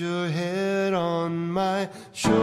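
Music from an oldies pop ballad: a singer holds one long sustained note that breaks off just before the end.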